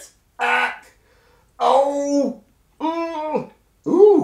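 A man's wordless, acted pained moaning: four short cries in a row, each a held note that drops away at its end.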